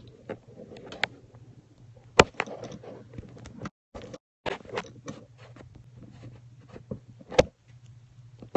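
Handling noise on a phone's microphone: scattered clicks, knocks and rustles over a low steady hum, with two louder knocks about two seconds in and near the end. The sound cuts out completely for about half a second near the middle, while the audio is being adjusted.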